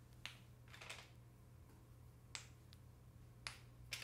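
About half a dozen faint, sharp, unevenly spaced clicks of plastic ball-and-stick molecular model pieces being handled.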